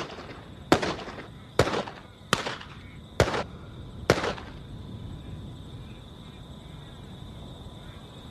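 Handgun fired five times in steady succession, just under a second between shots, each with a short echoing tail; the shooting stops about four seconds in, leaving a thin steady high tone.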